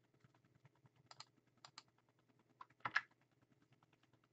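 Faint clicks of a computer keyboard and mouse: a few a little over a second in, and the loudest about three seconds in, over a faint low hum.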